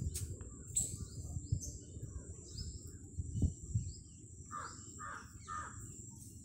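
A crow cawing three times in quick succession late on, over repeated short falling chirps of small birds and a steady high tone.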